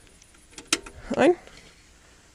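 A single sharp click of the Ford 3000 tractor's ignition key switch being turned on.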